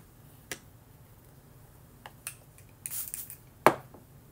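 A few sharp light clicks and taps from handling, with a brief rustle about three seconds in and the loudest click just before the end.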